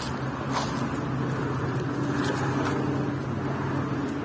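Road traffic noise with a steady engine hum.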